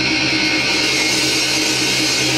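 Distorted electric guitars and bass of a live metal band holding a sustained, ringing chord, with no drum hits.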